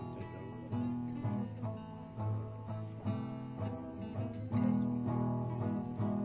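Instrumental music: guitar chords strummed in a steady rhythm, with no singing.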